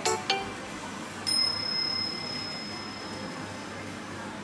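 The last few short musical notes of a jingle, then a single high bell-like chime about a second in that rings on and slowly fades, over a steady low background hum.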